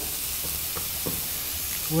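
Food sizzling steadily in a hot pan, with a couple of faint clicks near the middle.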